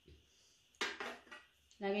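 Air fryer basket parts knocking together as they are handled: a short clatter about a second in, followed by a few softer knocks.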